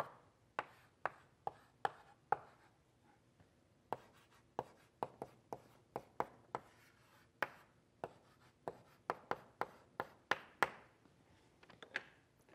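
Chalk on a blackboard as formulas are written: a quick, irregular run of sharp taps with short scratchy strokes between them, pausing briefly about three seconds in.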